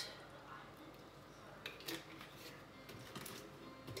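Quiet kitchen handling sounds: cream poured from a carton into a saucepan of mashed potatoes, then a few light knocks as the carton is set down on the counter, about halfway through and near the end.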